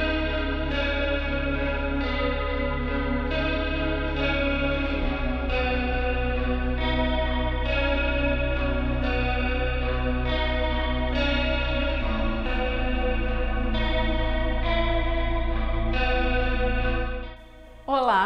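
Instrumental background music, with a melody of notes changing about every second over a steady low bass, fading out near the end.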